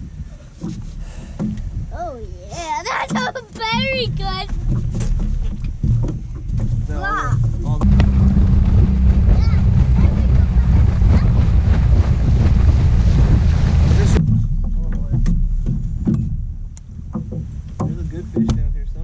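Boat under way on open water: a loud, even low rumble of motor and wind on the microphone that starts abruptly and cuts off suddenly after about six seconds. Excited voices shout before it, without clear words.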